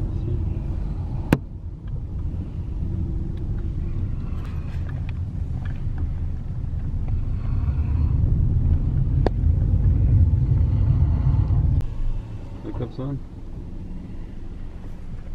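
Low rumble of a car driving, heard from inside the cabin, growing louder for a few seconds past the middle and then dropping off suddenly near the end as the car slows. A single sharp click about a second in, with faint voices in the cabin.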